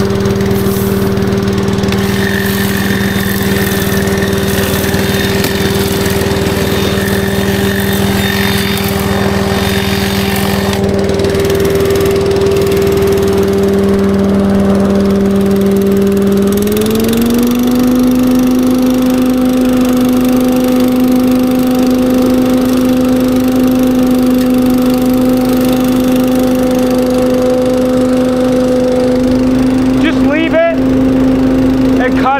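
Billy Goat KV601SP walk-behind leaf vacuum's small petrol engine running steadily as the machine is pushed over dry grass debris. About halfway through, the engine note rises a step and holds at the higher pitch.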